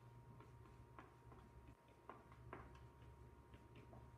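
Near silence broken by faint, irregular ticks and short squeaks of a marker writing on a whiteboard.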